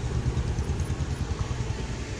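An engine idling nearby: a low, steady rumble.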